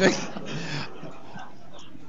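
A man's voice trailing off on "I think…" with a brief drawn-out hesitation sound, then quiet hall room tone.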